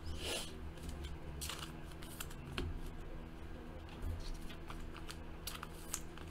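2017 Fleer Ultra Spider-Man trading cards being flipped through by hand, one card slid off a stack after another, with soft swishes and light card-on-card clicks over a faint steady hum.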